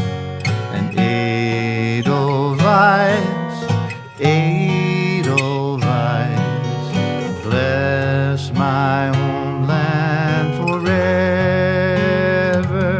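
Two acoustic guitars played together under a singing voice with vibrato, a folk song performed live; the voice pauses briefly about four seconds in.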